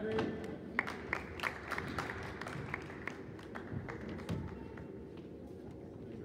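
Scattered hand clapping from a small audience, echoing in a large gym as awards are handed out. The claps are irregular and thin out after about four and a half seconds.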